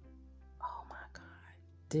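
Soft whispered speech, a woman murmuring under her breath about half a second in, over quiet background music.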